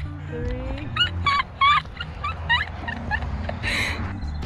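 High-pitched laughter in a string of short, quick bursts over background music.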